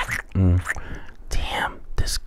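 A man's voice giving a short low hummed "mm" about half a second in, then breathy whispered voice sounds.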